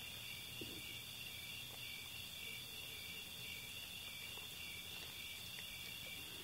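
Faint, steady chirping of crickets.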